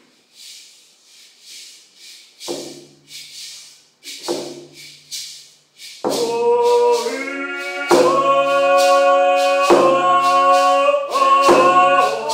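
A paddle song (travel song) sung by two voices over a steady rattling beat. For the first six seconds the beat goes with only a few short low vocal notes. About six seconds in, the singing comes in loudly in long held notes.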